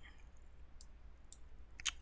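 Two faint computer mouse clicks, about half a second apart, over a low steady hum.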